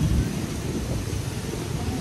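Wind buffeting the phone's microphone, a low, uneven rumble.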